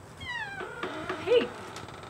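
A drawn-out pitched cry that starts with a downward glide, then holds and wavers, with a louder rise and fall about one and a half seconds in before fading.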